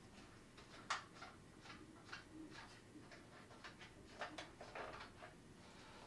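Faint clicks and light knocks of a finder scope and its mounting hardware being loosened and taken off a telescope tube, the sharpest click about a second in.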